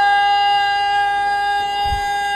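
A loud, steady whine from the sound system, held at one unchanging pitch with a string of overtones, the kind of ringing that microphone feedback makes. A brief low thump comes near the end.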